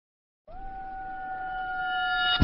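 Intro sting: a synthesized tone that begins about half a second in with a short upward slide, then holds one pitch while swelling steadily louder, with higher tones joining toward the end.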